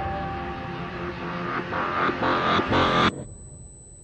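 Dark film-trailer sound design: a heavy rumble and drone with a fading held tone, swelling in a few louder surges. It cuts off suddenly about three seconds in, leaving only a faint high whine.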